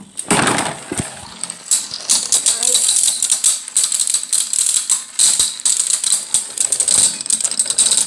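Two Beyblade Burst spinning tops whirring and clashing in a plastic stadium. From about two seconds in there is a fast, uneven run of rattling clicks as they knock against each other and the bowl.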